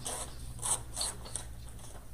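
Four short rustling scrapes close to a microphone, the loudest about two-thirds of a second in and again at one second.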